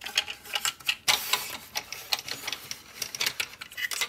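Plastic parts of a transforming robot toy's trailer clicking and scraping against each other as hands tab two halves together, with a sharper click about a second in followed by a brief rasping rub.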